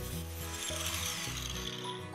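Angle grinder with a cut-off wheel finishing a cut through a steel rod, then spinning down with a falling whine as the hiss fades, over background music.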